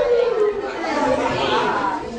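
Several cast members' voices at once, calling out over one another on stage, with one long drawn-out vocal cry sliding down in pitch.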